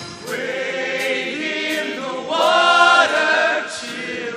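Show choir singing in harmony without the band, swelling into a louder held chord a little past halfway through.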